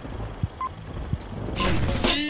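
Film-leader countdown sound effect: a short, high beep about once a second over a low crackling rumble with scattered pops. A rising noise swells just before the end.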